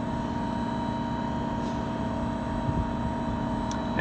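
LG VRF heat-pump outdoor unit running steadily: a constant drone from its condenser fans and inverter-driven compressor, with a few faint steady tones over it.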